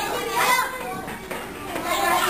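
Several children talking and calling out at once, a busy babble of young voices.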